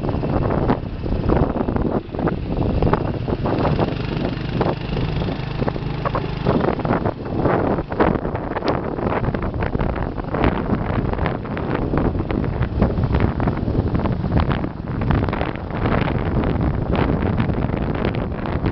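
Motorbike riding: wind buffeting the microphone in constant gusts over the bike's running engine, whose steady low note is clearest in the first six seconds or so.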